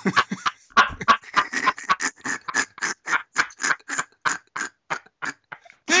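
A man laughing hard: a long run of breathy laughs, about four a second, slowing and fading near the end.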